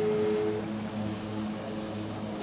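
Phone ringback tone heard over the phone's loudspeaker while a call rings out: one steady beep that stops about half a second in, over a low steady hum.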